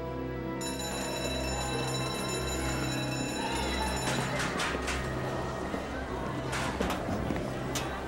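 Electric school bell ringing for about three seconds, signalling the end of class, over a low music score. Afterwards, several sharp knocks against a hallway bustle.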